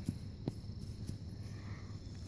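Insects chirring steadily and faintly in a high pitch, in the manner of crickets in grass, with a couple of light knocks from handling.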